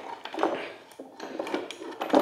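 A BWSS adjustable dumbbell being settled into its plastic base, its weight plates and handle clattering in several light knocks as it is seated all the way down so the weights can be adjusted.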